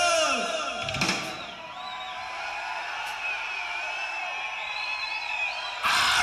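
Live heavy metal band. A held note slides down and ends on a hit about a second in, followed by a quieter stretch of thin, wavering high tones. The full band crashes back in loudly near the end.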